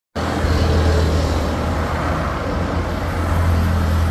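Steady low hum under a broad hiss of a motor vehicle running at a constant idle-like speed.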